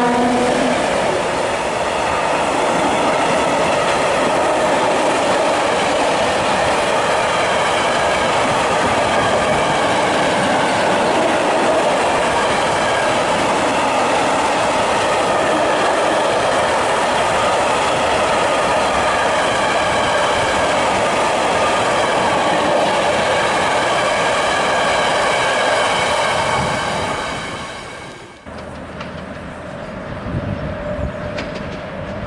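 M62 diesel locomotive, two-stroke V12, passing close, with a long train of tank wagons rolling by behind it and its wheels clattering over the rail joints. A horn note cuts off within the first second. The sound fades and drops away near the end.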